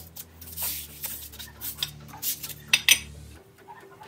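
Aluminium extrusion lengths knocking and clinking against one another and the bench as they are handled and fitted together into a frame, a string of short metallic knocks with the two sharpest close together near three seconds in.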